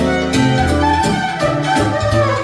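Amplified violin playing a melody over keyboard accompaniment, with held bass notes and a steady beat.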